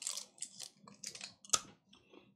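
A piece of chewing gum being bitten and chewed close to the microphone: a run of soft, irregular mouth clicks and crunches, with one sharper crunch about one and a half seconds in.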